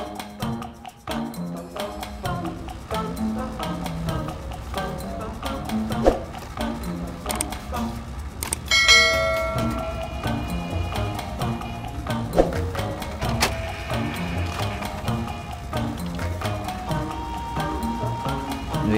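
Background music with a steady beat. About nine seconds in, a bright bell-like chime rings out over it, a subscribe-button notification sound.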